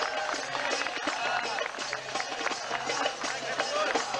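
Riq (Arabic tambourine) beaten in a quick steady rhythm, its jingles ringing, under a crowd's voices.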